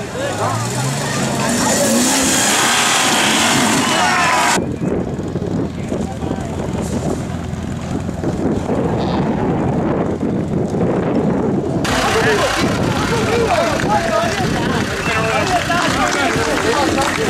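Off-road 4x4 engines working slowly over rough ground, mixed with spectators' chatter and shouts. The sound changes abruptly twice, at cuts between different vehicles.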